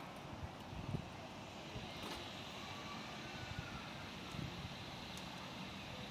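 Faint, steady hum of distant engines, with a few soft low thumps.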